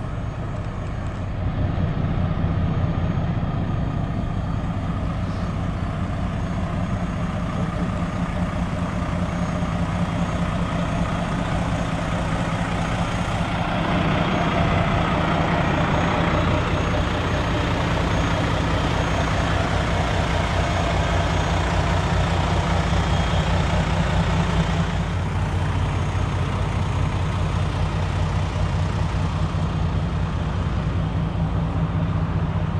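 Diesel engine of a Greyhound motor coach idling with a steady low hum. It grows louder for about ten seconds in the middle, close to the rear engine compartment.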